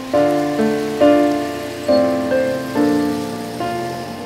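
Slow background piano music: single melody notes struck about once every second and left to ring and fade, over a steady hiss.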